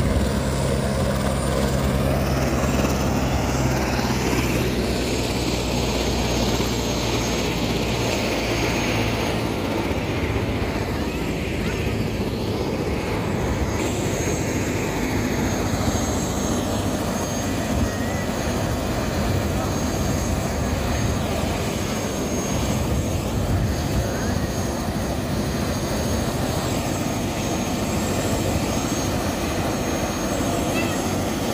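Light helicopter running on the ground with its turbine and rotor turning: a steady high whine over a low rotor hum, the hum strongest in the first several seconds.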